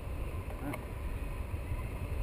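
Wind noise from the airflow of a paraglider in flight buffeting the camera microphone: a steady low rumble.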